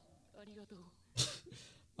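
Faint dialogue from the anime episode, then a man clears his throat once, briefly, about a second in.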